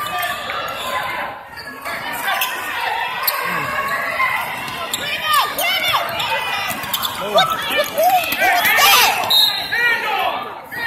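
Basketball game on a hardwood gym floor: a ball bouncing and sneakers squeaking on the court, the squeaks coming thick in the second half. Voices and calls sound in the background, with the echo of a large hall.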